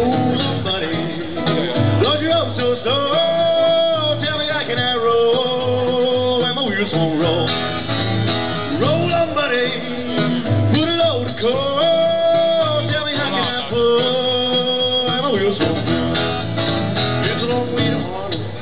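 Acoustic guitar strummed in a blues rhythm while a man sings, holding long notes that swoop into pitch and waver.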